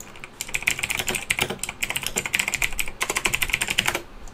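Fast typing on a computer keyboard: a quick, continuous run of key clicks that starts just after the beginning, with a short pause a little before the end.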